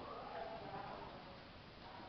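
A person's voice is heard briefly in the first second, over low, steady background noise; no hoofbeats stand out.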